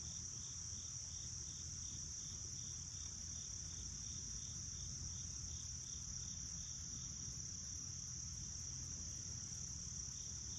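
Steady high-pitched insect chorus, with a fainter chirp repeating about twice a second beneath it, over a low steady rumble.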